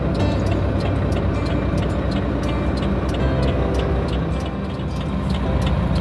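UD Quester CGE 370 dump truck's diesel engine idling steadily, heard from inside the cab, with background music and a regular ticking beat over it.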